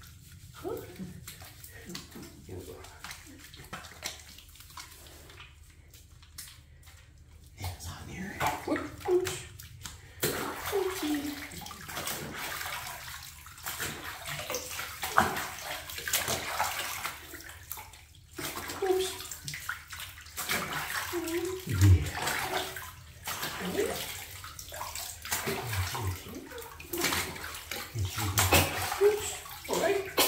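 Bathwater splashing and sloshing in a tub as a hairless Sphynx cat is washed by hand in shallow water, with scrubbing strokes and the cat's steps stirring the water. The splashing grows louder and more continuous about a third of the way in.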